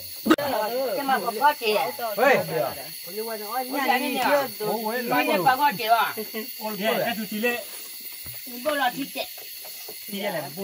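Mostly people talking in short phrases with brief pauses, with a sharp click just after the start and a faint steady high hiss underneath.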